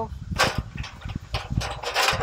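A sharp click about half a second in, then a few lighter clicks and knocks as the lid and fold-out wind panels of a two-burner camp stove are handled and set in place.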